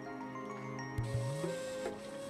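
Background music: held notes that change in steps over a low bass note, which slides upward about halfway through after a short thump.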